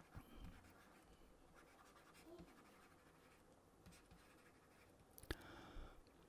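Near silence, with faint scratching and light taps of a pen writing on a tablet, and one sharper tap about five seconds in.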